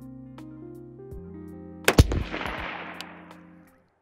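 A single 5.56 shot from an AR-15-style rifle about two seconds in, with a long echoing tail that fades over more than a second. Steady background music plays throughout.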